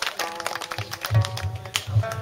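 Pipa playing as background music: plucked notes that ring on at steady pitches.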